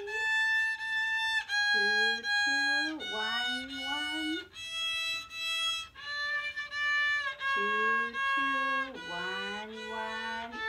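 A child's violin playing long, sustained bowed notes under the teacher's guidance, a new pitch about every one and a half seconds.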